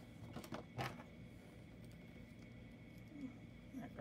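A few faint clicks of plastic construction-toy parts being handled within the first second, over a low steady hum.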